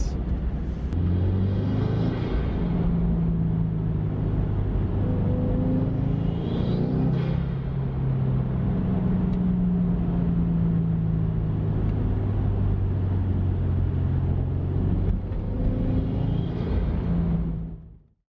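Cabin sound of a Subaru WRX being driven: steady engine and road noise from its turbocharged flat-four, fitted with a COBB cold air intake. It fades out at the very end.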